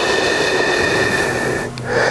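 A long, steady hissing exhale, breath pushed out through the teeth with a faint whistle in it, marking the exhale as the body curls up in a Pilates hundred prep. It dips briefly near the end.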